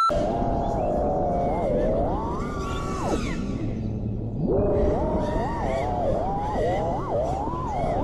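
Brushless motors and propellers of an FPV quadcopter whining, the pitch swooping up and down with the throttle. About three seconds in the whine drops to a low drone for about a second, then climbs back in quick rising and falling blips, over wind rumble on the onboard camera.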